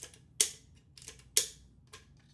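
Sharp plastic clicks from a 3D-printed Webley & Scott No. 1 Mark 1 flare gun replica's spring-loaded barrel latch as the break-over barrel is worked. There are two loud snaps about a second apart, with fainter clicks between them.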